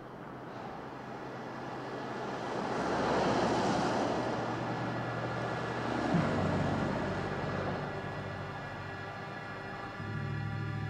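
Road traffic passing on a city street: a vehicle's noise swells to a peak a few seconds in and fades, with another vehicle passing close about six seconds in.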